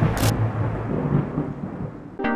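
Title-sting sound effect: a thunder-like boom dying away into a low rumble, with a brief sharp crack just after the start.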